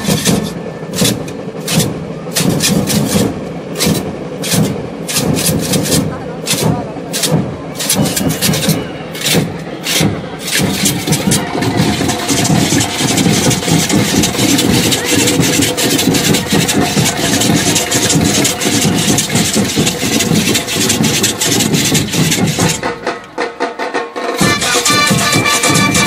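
Percussion of a street marching band: sharp, fast strokes for the first ten seconds or so over dense low drumming, then a continuous dense wash of percussion that drops briefly near the end.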